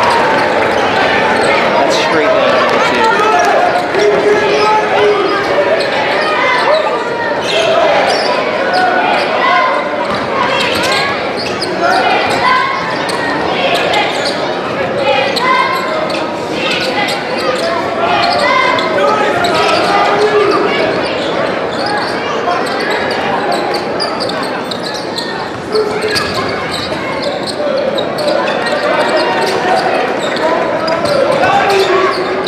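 A basketball dribbled again and again on a hardwood gym floor during live play, with steady crowd chatter echoing around the gymnasium.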